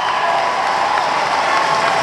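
Audience applauding and cheering, an even, steady clatter of clapping that echoes in a large hall.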